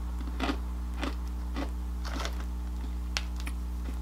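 Small crunchy ring-shaped snack chips being chewed: a few irregular crunches over a steady low hum.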